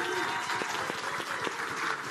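Audience applauding, with a few voices calling out over the clapping.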